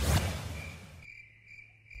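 A short swell of noise that fades over about a second, then crickets chirping steadily: a night-time ambience sound effect in a cartoon soundtrack.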